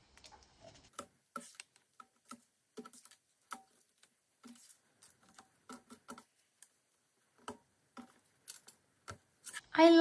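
Light, irregular taps and clicks of painted board pieces being picked up, slid and set down on a craft mat while they are fitted together.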